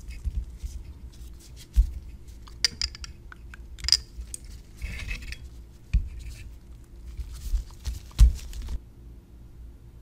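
A glass graduated cylinder with a plastic base being handled: light clinks and scrapes of glass as it is tilted to take in a small acrylic cylinder, and a few dull knocks as the base is set down on the benchtop. The handling stops shortly before the end.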